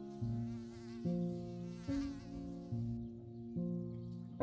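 Slow, soft instrumental music: sustained low chords that change about every second. A wavering, buzzing texture sits above them for the first three seconds, then drops away.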